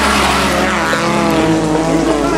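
Fiat Uno rally car's engine revving hard on a dirt course, heard under background music with a steady bass line.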